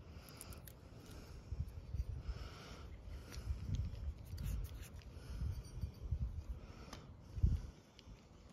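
Fingertips tapping and rubbing on a Shakespeare spinning reel's body and spool: a scatter of soft clicks and short scratchy rubs over a low, irregular rumble, with a heavier thump near the end.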